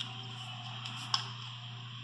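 Steady low background hum, with one brief faint click about a second in.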